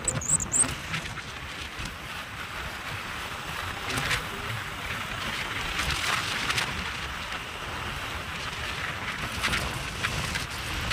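Wind rushing and buffeting over the microphone of a rider on a Honda SP125 motorcycle, with the bike's engine and road noise beneath it. A few brief high chirps come near the start.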